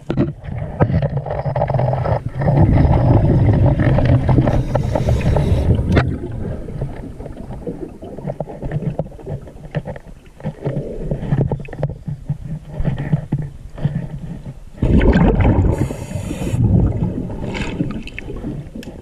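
Scuba diver breathing through a regulator, heard underwater: loud rumbling exhaust bubbles with a hiss from the regulator, twice, the second about eleven seconds after the first. Quieter bubbling and water noise run in between.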